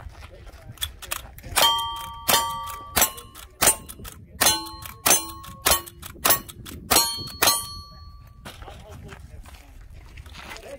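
A rifle fired ten times in quick succession, about one shot every 0.6 seconds, each shot answered by the ringing clang of a struck steel target plate; the last ring fades out about a second after the final shot.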